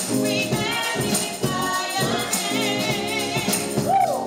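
Gospel praise song: voices singing over organ chords, with a tambourine shaken in rhythm.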